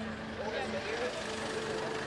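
Street ambience: a steady hum of traffic with faint, indistinct chatter from a waiting crowd.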